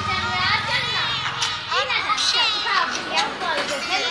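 Children's voices calling and chattering over one another, several high-pitched voices at once.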